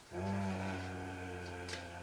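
A man's voice holding one long, level "eh..." hesitation sound for nearly two seconds, at a low and steady pitch.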